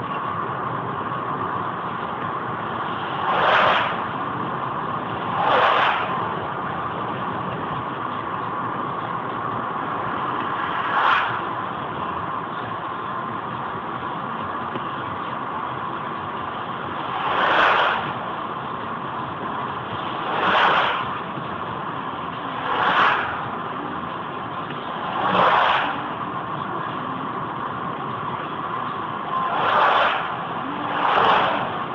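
Steady road and engine noise inside a car cruising at about 80 km/h, picked up by a dashcam microphone. About eight times, a vehicle passes in the other direction with a whoosh that swells and fades within about a second.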